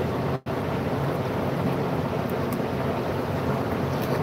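Steady loud rushing noise with a faint low hum, cutting out completely for a split second about half a second in.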